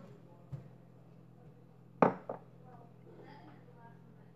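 A single sharp knock about halfway through, a small thump before it, then faint murmured voice, over a steady low hum.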